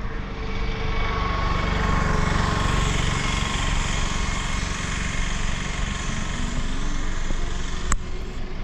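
A car driving along a road, heard from inside: steady engine hum with tyre and wind noise. A single sharp click comes near the end.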